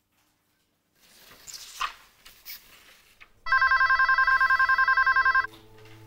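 Office desk telephone ringing once with an electronic warbling trill for about two seconds, after a few faint clicks and rustles.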